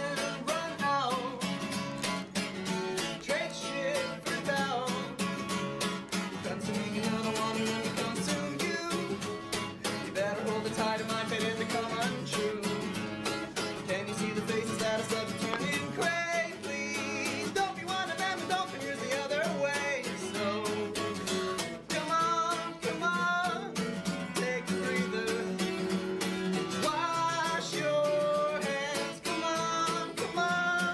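A guitar strummed steadily through a song, played live.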